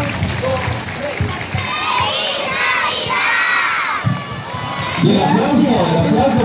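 A group of children cheering and shouting, loudest for about two seconds in the middle, over general crowd noise; near the end a man begins speaking.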